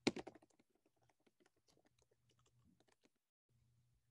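Faint typing on a computer keyboard: a few louder key clicks right at the start, then light, irregular keystrokes.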